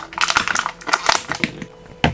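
Thin plastic blister tray crackling and clicking as thumbs press into its moulded wells and pop it apart. The crackles come in a quick, dense run and thin out near the end.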